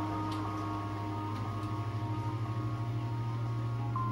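Film score music: sustained, ringing high tones held over a low drone that throbs in a steady pulse, growing slightly louder toward the end.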